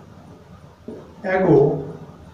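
A man's voice drawing out a single word, with faint chalk scratching on a blackboard in the quieter first second.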